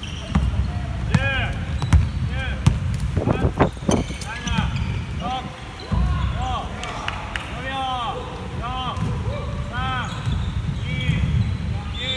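Basketball bouncing on a wooden gym floor during play, with many short sneaker squeaks on the court, two or three a second.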